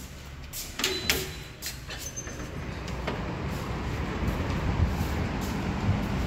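A few sharp knocks about a second in, then a steady hum of road traffic from a nearby highway that grows gradually louder.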